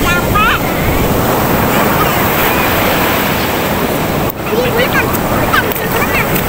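Ocean surf breaking and washing up a sandy beach: a steady, loud rush of waves and foam.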